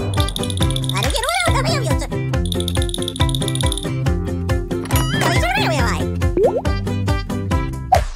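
Upbeat background music with a steady beat and a rattling shaker. Two short wordless voice exclamations with swooping pitch sound over it, about a second in and about five seconds in.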